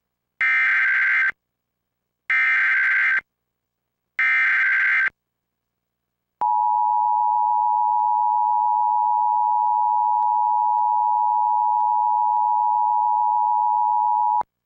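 Emergency Alert System SAME header: three identical bursts of screeching data tones, each about a second long and evenly spaced. They are followed by the EAS two-tone attention signal, a steady harsh tone that starts about six seconds in and holds for about eight seconds.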